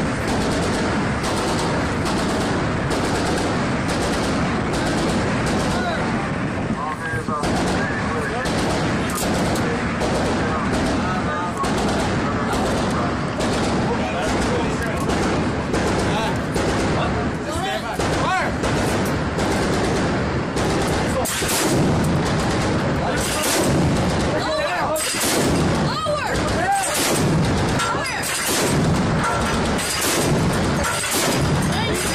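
Shipboard deck-mounted guns firing repeated single shots and short bursts over a steady background noise. The shots come louder and sharper, about one a second, from about two-thirds of the way in.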